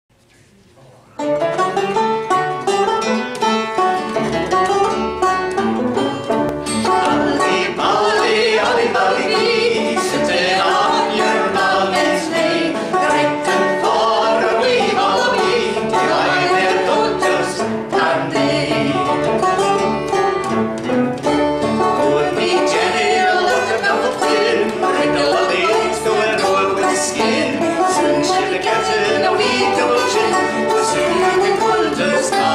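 Live folk band playing: a banjo and a second plucked string instrument, with voices singing. The music starts suddenly about a second in and then runs at a steady level.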